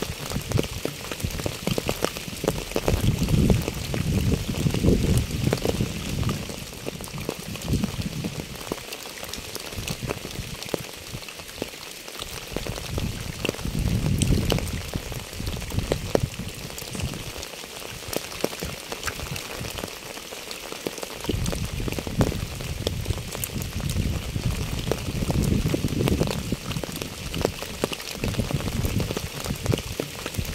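Rain falling on a wet asphalt path and its puddles: a steady patter of many small drops. A low rumble swells and fades several times under the patter.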